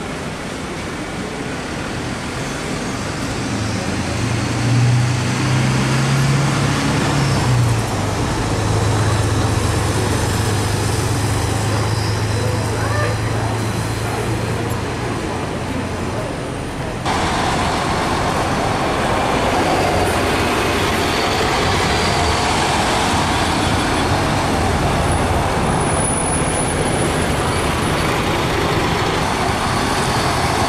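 Mercedes-Benz Citaro single-deck diesel bus pulling away: its engine note rises as it moves off, then holds steady as it drives on. A little past halfway the sound changes suddenly to louder, steady road traffic noise.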